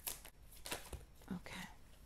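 Faint rustling and a few soft taps of a tarot deck being shuffled by hand, with several cards slipping out onto the table.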